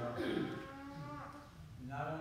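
A person imitating a cow with a drawn-out, low-pitched moo.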